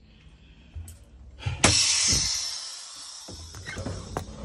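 A sudden loud burst of compressed air hissing from a school bus's air system, starting about a second and a half in and fading over the next second or two.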